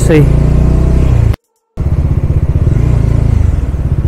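Bajaj Dominar's single-cylinder engine running as the motorcycle rides along at low speed. The sound cuts out to silence for a moment about a third of the way in, then the engine carries on.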